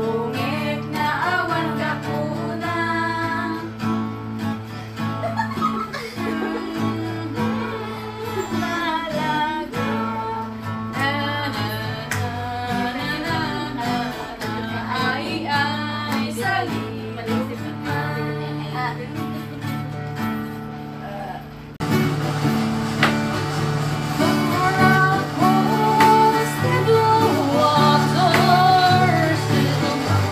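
A woman singing to her own strummed acoustic guitar, the melody wavering over steady chords. About two-thirds of the way through, the sound cuts abruptly to a louder passage of the same singing and guitar.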